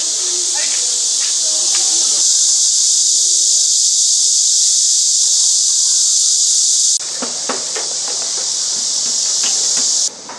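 A loud, steady high-pitched hiss that drops abruptly about seven seconds in and goes on a little quieter, with faint knocks underneath.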